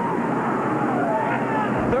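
A pit crew shouting and whooping in celebration: long yells that rise and fall in pitch, one after another, over a steady engine drone.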